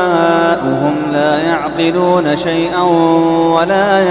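A man's solo voice reciting the Quran in melodic tajweed style. He holds long drawn-out notes with wavering, ornamented turns in pitch.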